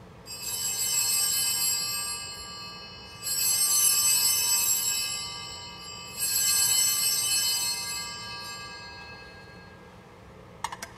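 Altar bells rung three times, about three seconds apart, as the consecrated host is elevated. Each ring is a bright cluster of high tones that sounds at once and then fades over a couple of seconds.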